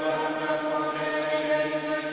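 Sung liturgical chant with long, steady held notes.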